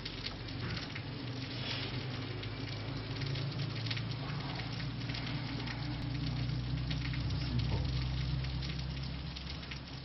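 Steady background noise: a low hum with an even crackling hiss, swelling slightly in the middle and easing toward the end.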